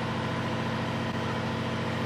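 Steady low background hum with a buzzy pitched tone, unchanging throughout.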